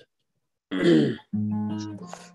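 A brief throat clearing, then a guitar chord struck about a second and a half in, left ringing and slowly fading.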